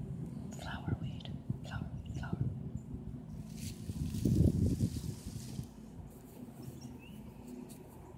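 Fingers scratching and rustling grass blades close to the microphone in short strokes. About halfway through, a louder gust of wind rumbles on the microphone for a couple of seconds, then it settles to a quieter outdoor hush.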